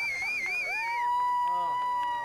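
Eclipse watchers calling out in long, high-pitched held cries over quieter talk. First comes a wavering cry lasting about a second, then a steady, lower one that holds and drops away at the end.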